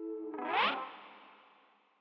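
Electric guitar through effects pedals: a held chord breaks off about half a second in with a quick rising pitch sweep, then a processed wash that fades away to silence.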